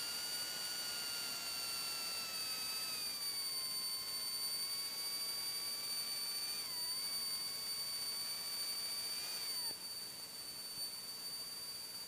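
Commander 112's electric hydraulic landing-gear pump whining as the gear retracts: a thin whine that slowly sinks in pitch, dips briefly about seven seconds in, then falls away and stops near ten seconds. A steady high-pitched tone runs underneath.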